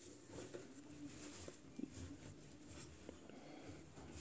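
Near silence: faint handling noises from the open front-loading washing machine and the wet laundry inside, with one small click a little under two seconds in.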